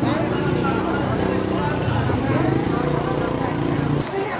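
A motor vehicle engine running steadily with a low hum under crowd chatter. It cuts off suddenly at the end.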